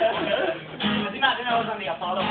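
Acoustic guitar strummed live, with people's voices over it.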